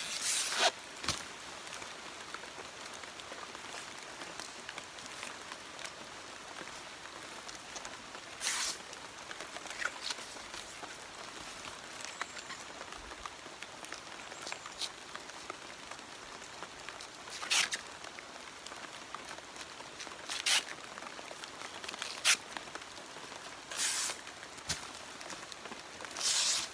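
Abaca leaf sheaths being tuxied by hand: a knife lifts the outer fibre layer and strips are torn off the sheath, giving several short ripping sounds a few seconds apart over a steady faint outdoor hiss.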